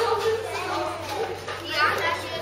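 Crowd of visitors chattering, children's voices among them; near the end one child's voice rises high.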